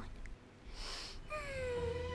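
A young boy's voice humming a long thoughtful "hmm" that slides slowly down in pitch, after a short breath.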